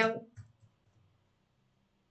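The end of a spoken word, then a few faint clicks of computer keyboard keys as text is typed, then near silence.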